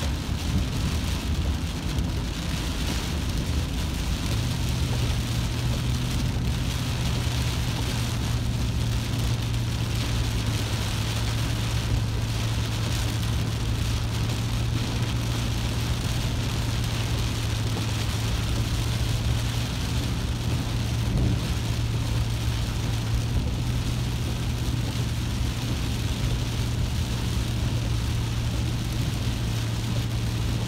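Heavy rain beating on a vehicle's windshield and roof, heard from inside the cab over engine and road noise. A steady low hum comes in about four seconds in and holds.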